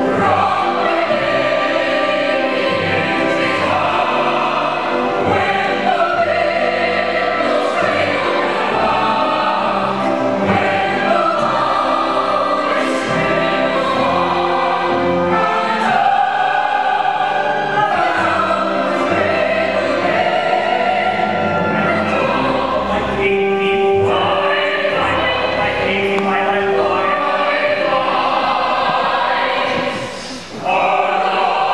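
Operetta cast singing together in chorus, with orchestra accompaniment, in a continuous, full-voiced stage number.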